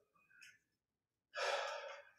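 Near silence, then about two-thirds of the way in a man's sharp intake of breath, close on the microphone, fading out quickly.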